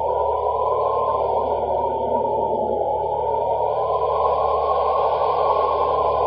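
Eerie ambient background drone: a steady rushing hiss over a low hum, swelling slowly.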